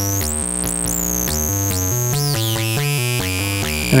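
Modular synthesizer note sequence played through a Doepfer A-106-1 Xtreme lowpass/highpass filter, its resonance near self-oscillation, with high whistling pitches sweeping up and down above low notes that step every fraction of a second. The clipping level has just been turned down, giving the sound a distorted edge.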